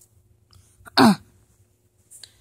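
A child's single short vocal grunt, "uh", falling in pitch about a second in: a pretend sick noise for a plush-toy character.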